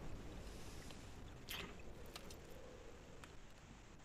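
Quiet drama soundtrack: a low steady hum with a few soft rustles and clicks, the clearest about one and a half seconds in.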